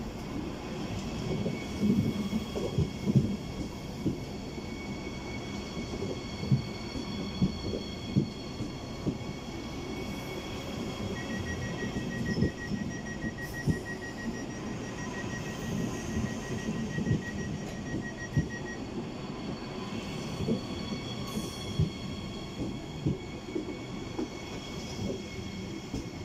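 Siemens Desiro HC double-deck electric multiple unit (class 462) pulling out past the platform. Its wheels clack over rail joints and points under a steady running rumble, with a steady high whine over the top.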